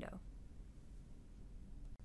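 The end of a spoken word, then faint steady background hiss and low hum: room tone between narrated sentences.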